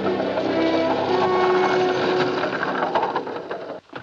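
Film score music playing over the clatter of a two-horse buggy's hooves and wheels. It cuts off sharply just before the end.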